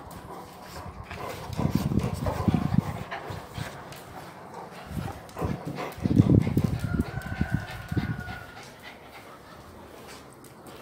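Pet dogs vocalizing excitedly at close range in two bouts of low sounds, with a steady high whine lasting a second or so about seven seconds in.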